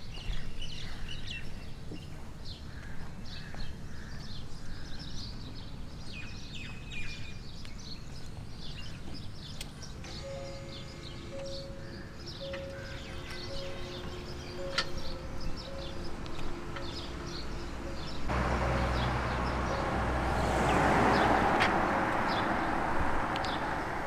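Birds chirping, then from about halfway a low electric hum with an evenly pulsing tone, the pedestrian-warning sound of a Hyundai Ioniq 5 electric car moving off slowly. In the last few seconds tyre noise and a rush swell as the car drives past, with no engine sound.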